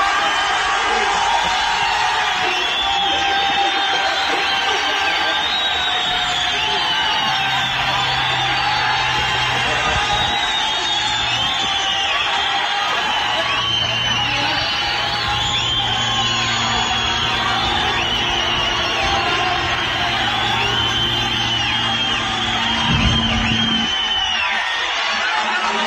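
Live Arabic concert recording: the audience cheering, whooping and calling out over the orchestra as the song draws toward its close.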